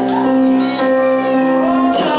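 A woman singing through a microphone over held electric keyboard chords, a live worship song.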